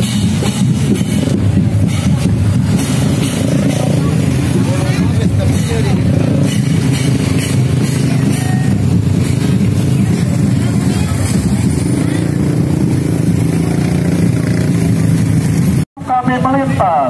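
Many motorcycle engines idling and revving in a packed street, mixed with crowd voices. The sound drops out briefly near the end.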